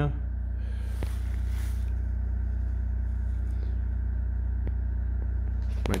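A steady low hum, with a brief rustle and a faint click about a second in.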